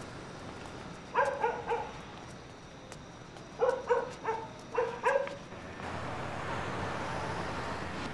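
A dog barking in short pitched barks: three in quick succession, then a run of about five. After that comes the steady noise of street traffic.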